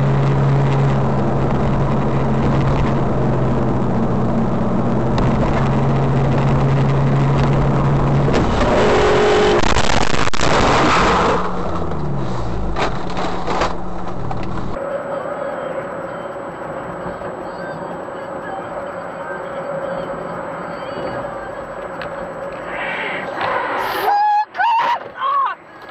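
Dashcam audio from inside a car: a steady engine and road drone, then about ten seconds in a loud crash lasting a second or two, followed by scattered knocks as the car tumbles. After a sudden cut, a quieter steady in-cabin hum from another car.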